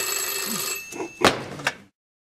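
Desk telephone bell ringing for about a second, then a few short knocks as the receiver is picked up to answer the call.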